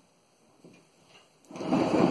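A person sitting down in a chair close to the microphone: faint movement at first, then about one and a half seconds in a loud, noisy rustle and scrape of body and chair settling.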